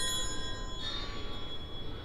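A bell struck once, its several clear tones ringing on and slowly fading, over a low rumble.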